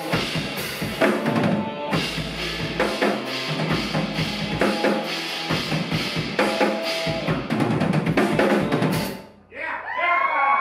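Live rock band ending a song: a Yamaha drum kit is played hard, with bass drum, snare and cymbals, under sustained keyboard tones. The music stops suddenly about nine seconds in, and audience whoops start just at the end.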